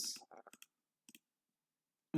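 A computer mouse clicking faintly: a few short clicks about half a second in and two more a little after one second.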